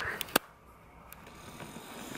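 Two or three short, sharp clicks within the first half-second, then faint room tone.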